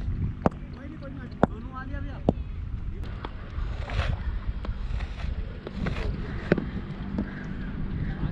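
Wind buffeting a helmet-mounted action camera's microphone as a steady low rumble, with distant voices calling across the field. Four or five sharp taps stand out, about half a second, one and a half, two and a half and six and a half seconds in.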